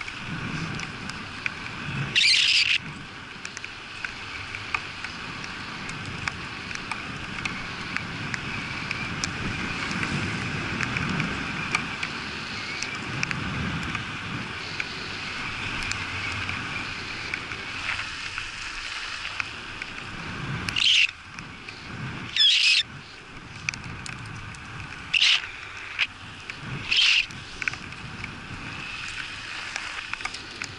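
Bicycle tyres hissing on wet asphalt with wind on the microphone as the bike rides along. Five short, high-pitched bursts cut in, one about two seconds in and four close together near the end.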